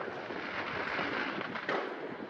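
Steady crackle of many distant New Year's Eve fireworks and firecrackers, a dense rattle of small bangs with a few slightly louder pops near the end.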